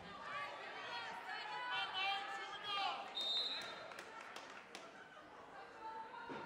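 Gymnasium crowd and players' voices, with a brief steady high tone about three seconds in. Then come a few sharp knocks of a volleyball being bounced on the hardwood court floor before the serve.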